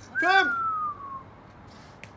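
A person's short, high-pitched vocal cry, about a second long, trailing off into a thin tone that falls in pitch.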